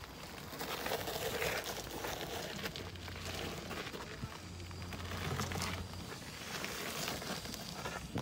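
Rustling, crackling movement noise from a wheelchair being moved slowly along a garden path, with a low steady hum for about three seconds in the middle.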